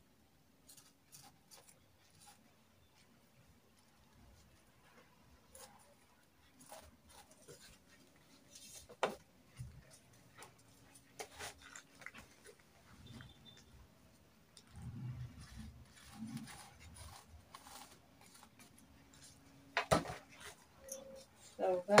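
Light handling sounds of lace and organza fabric on a cloth-covered table: scattered soft rustles, clicks and taps as the cloth is smoothed and a long wooden ruler is laid across it, with sharper knocks about nine seconds in and again near the end.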